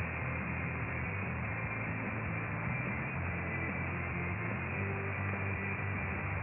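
Long-distance mediumwave AM reception of Japanese station JOYR RSK Sanyo Hoso on 1494 kHz through a software-defined radio: weak music buried in steady static and hiss, with the narrow, muffled audio of an AM signal.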